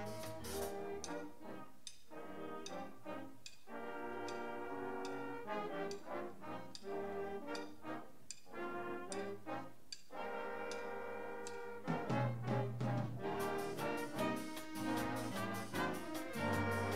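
High school band playing a brass-led piece with trombones and trumpets over ticking cymbal strokes. About twelve seconds in the band grows louder, with heavy low brass notes.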